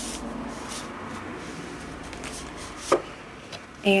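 Tarot cards being shuffled and slid by hand: a run of quick papery rubbing strokes, with one sharp card snap about three seconds in.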